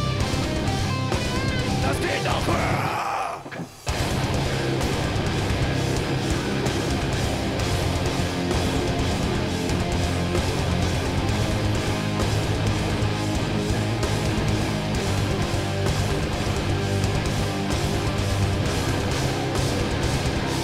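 Live metalcore band playing loudly: distorted electric guitars, bass and drums. The band stops short about three seconds in and crashes back in with the full sound just under a second later.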